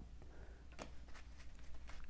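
Faint light ticks of tarot cards being handled, as a card drops out of the deck onto the cards laid on the table: one small tick about a second in and another near the end, over a low steady hum.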